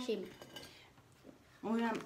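Faint clinks of cutlery and plates at a breakfast table, between two short bits of talk, one at the very start and one in the last half-second.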